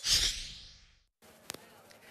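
A broadcast transition whoosh accompanying an animated 'LIVE' graphic, loud at the start and fading out within about a second, followed by a brief silence and a faint click about one and a half seconds in.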